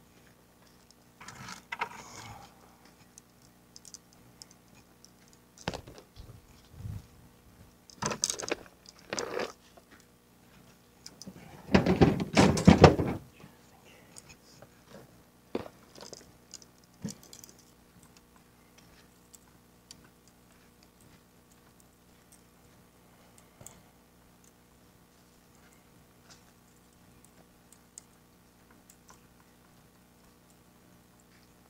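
Fishing gear being handled at a pickup truck: rods and a landing net taken out and carried, with a series of knocks and rattles and one louder clatter about twelve seconds in, then mostly quiet handling.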